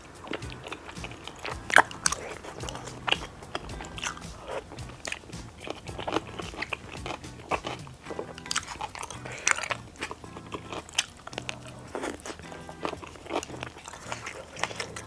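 Close-miked eating sounds of jjajang tteokbokki with dumplings and glass noodles: biting and chewing, with many short crunchy and wet mouth clicks, over background music.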